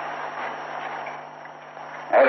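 A pause in speech filled by the steady hiss and low hum of an old tape recording.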